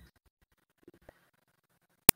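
Near silence, with two faint clicks about a second in.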